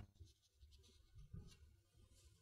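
Near silence: faint room tone with a slight rustle of book pages being handled on a desk.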